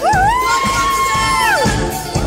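A woman's voice holds one long high note into a microphone, sliding up at the start and dropping away after about a second and a half, over a live band with drums.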